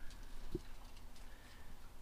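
Quiet background as a peacock's call fades out at the very start, with one soft knock about half a second in.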